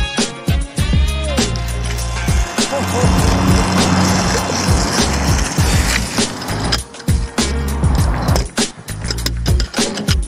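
Freeline skate wheels rolling and grinding over concrete and the ramp surface, loudest as a rushing hiss a few seconds in, with sharp clacks of the skates hitting the ground. Music with a steady beat plays under it.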